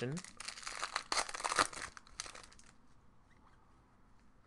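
Foil trading-card pack being torn open and crinkled by hand: a run of crisp crackles for about two and a half seconds, then dying away to faint handling.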